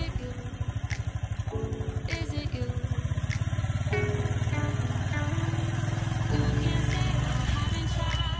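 Background music with a melody, laid over the fast, even low thump of a Royal Enfield Thunderbird 350's single-cylinder engine running at a steady cruise.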